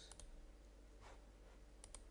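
Faint computer mouse clicks over near-silent room tone: a quick pair just after the start and another pair near the end.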